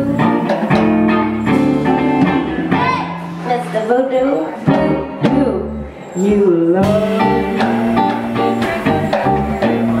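Live electric band: electric guitar, electric bass and drum kit, with a woman singing. The band drops back briefly about six seconds in, then comes in loudly again.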